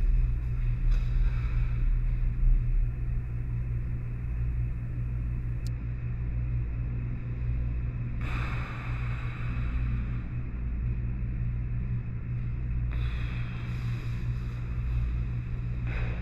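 A steady low hum, with a faint hiss joining it about eight seconds in and again near the end.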